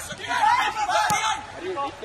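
Men's voices calling out and chattering on the pitch, with one short sharp knock about a second in.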